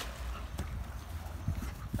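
Pool water splashing and sloshing as a person wades through an above-ground swimming pool, with a few short splashes and a low wind rumble on the microphone.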